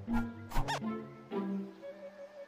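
Cartoon rodent characters making short squeaky chitters over an orchestral film score: a few quick squeaks in the first second, one rising and falling in pitch, and another about a second and a half in.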